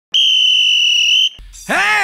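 A single loud, steady, high-pitched whistle-like tone, about a second long, that cuts off sharply. A voice starts calling out near the end.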